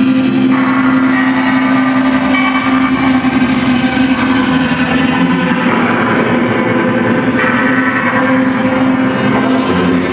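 Live drone music from electric guitars run through effects pedals: a loud, steady low drone held throughout, with layered higher sustained tones that shift every few seconds.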